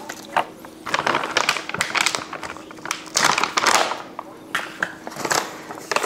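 Crinkling and rustling of a stand-up pouch of collagen powder being handled, in irregular bursts, with small spoon and cup handling noises in between.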